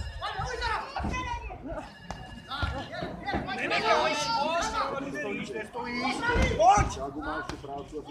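Several voices at ringside talking and calling out over one another during a boxing bout.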